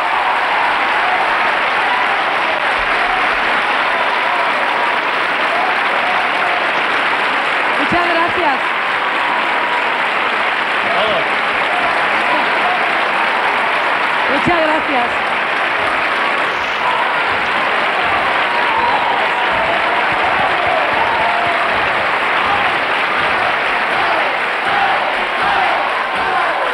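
Studio audience applauding steadily and at length, with scattered shouts from the crowd, at the end of a song.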